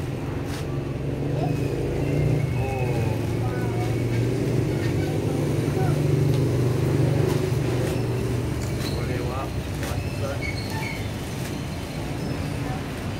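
Low, steady motor-vehicle engine rumble that swells through the middle seconds and eases off near the end, with light crinkling of a plastic bag over it.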